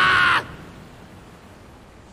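A loud, harsh, high-pitched cry cuts off abruptly about half a second in, leaving only a faint hiss.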